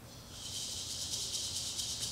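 A rapid, high rattling hiss like a rattlesnake's rattle, a stage sound effect for the snake, starting about a third of a second in.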